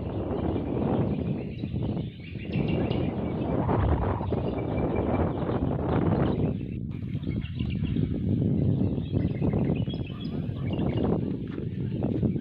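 Wind buffeting the microphone in uneven gusts, with a few faint bird chirps above it.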